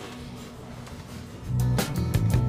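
Background music for a scene change: a soft underscore, then a louder track with a steady beat and heavy bass coming in about one and a half seconds in.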